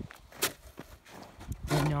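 Footsteps on packed snow and ice: a few separate steps, with a voice starting near the end.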